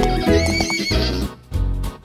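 A horse whinnying: one wavering, trembling call of about a second, over backing music with a steady beat.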